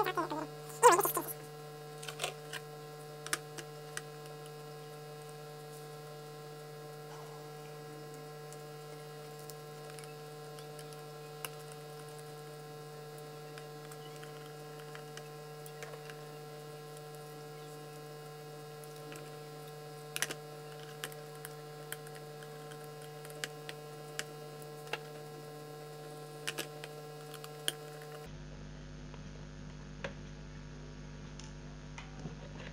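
Steady electrical mains hum with scattered light clicks and taps of laptop parts being handled, louder knocks in the first couple of seconds. The hum changes abruptly near the end.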